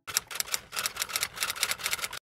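Typewriter keys clacking in a quick, uneven run of about seven strokes a second, a typing sound effect laid under the on-screen title text.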